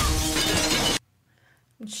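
A glass window shattering with a crash over the episode's score, cut off abruptly about halfway through. Then a short near-silence, and a woman starts to speak near the end.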